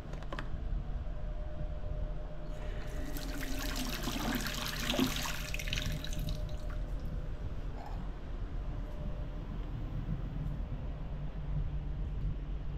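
Bathroom basin tap turned on, water running into the sink for about three and a half seconds, then shut off.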